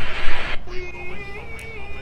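A loud hiss that cuts off suddenly about half a second in, followed by background music carrying a simple, steady melody.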